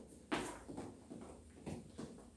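Faint, quick soft thuds and scuffs of feet on the floor, about three a second, from someone doing mountain climbers.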